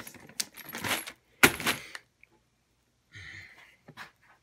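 Loose 9mm brass cartridge cases clinking against each other inside a plastic zip bag as it is handled, with one louder metallic clink about a second and a half in. A short soft rustle follows near the end.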